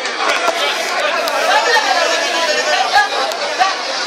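Several men shouting and talking over one another, a loud excited babble of voices.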